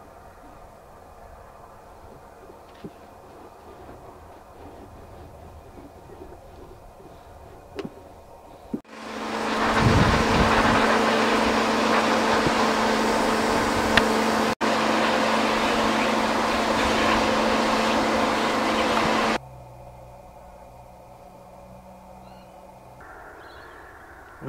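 A high-pressure washer jetting water onto a rusty hand saw blade lying on concrete: a loud, steady hiss of spray over a steady pump hum. It starts up about nine seconds in, runs for about ten seconds, then stops suddenly, with only faint background before and after.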